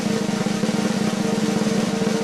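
A drum roll sound effect: a fast, even roll of drum strokes, building suspense ahead of a reveal.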